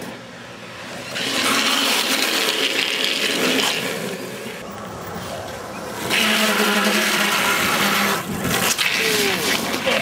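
Longboard sliding sideways across asphalt: two long scrapes of the wheels on the road, each about three seconds, the first starting about a second in and the second about six seconds in, with the rider's hand down on the road.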